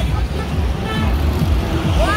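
Steady low vehicle rumble, with voices talking faintly over it.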